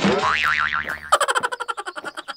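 Cartoon "boing" sound effect: a springy tone wobbling quickly up and down in pitch, then, about a second in, a quick run of short repeated notes.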